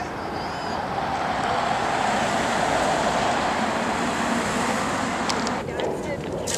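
Road traffic: a passing vehicle's tyre and engine noise swelling to a steady rush over a few seconds, then cutting off suddenly shortly before the end.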